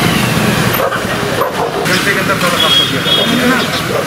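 Indistinct voices over loud, steady outdoor street noise.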